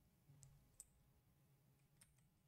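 Near silence: faint room tone with two faint clicks about a third of a second apart, computer keys being pressed.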